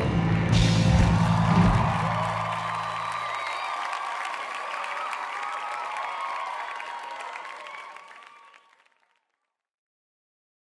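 A live rock band ends a song on a final chord with drum hits, its low end cutting off about three seconds in. A crowd cheers, whoops and applauds, and the sound fades out to silence near the end.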